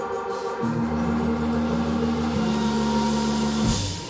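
Live band of electric guitar, drums and keyboards closing a tune: a low note is held for about three seconds and is cut off by a final hit from the kit near the end, after which the music falls away.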